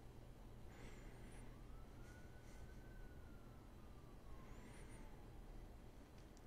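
Near silence: a faint low hum, with one faint tone that slowly rises and then falls over a few seconds.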